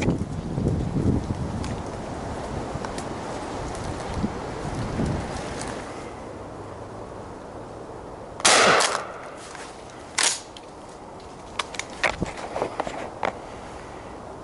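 Pump-action shotgun (Winchester SXP) fired once, a loud bang about eight and a half seconds in, followed about two seconds later by a shorter, sharper bang and then a few light clicks. Before the shot there is low rustling handling noise.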